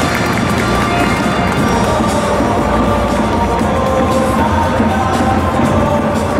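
Loud, steady football-stadium crowd sound with music playing over it and some cheering.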